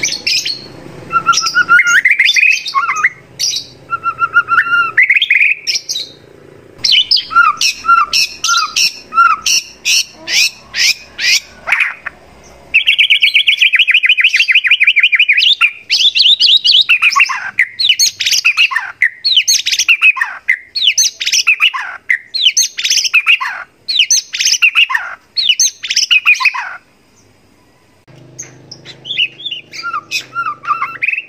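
White-rumped shama (murai batu) singing loudly in a varied song: whistled phrases and quick chattering notes, then a fast buzzing trill about halfway through, then a run of about ten down-slurred notes roughly one a second.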